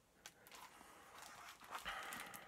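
Faint rustle of a hardcover book's paper pages being opened and leafed through, growing a little louder near the end.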